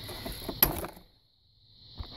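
Plastic glove box latch of a 2002 GMC Sonoma snapping open, one sharp click just over half a second in.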